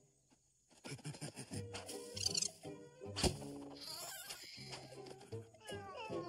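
Cartoon soundtrack music with sound effects. It comes in after a brief silence, has a sharp hit about three seconds in, and ends with a quick falling glide.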